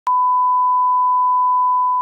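Colour-bar reference test tone: a single steady 1 kHz beep that starts with a click.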